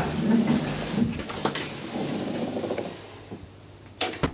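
Old Schlieren traction elevator running between floors, a rumbling mechanical noise with a few clicks. It eases off and goes quiet about three seconds in as the car comes to a stop.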